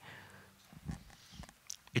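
A quiet pause in a talk: faint room tone with a few soft, low knocks in the second half.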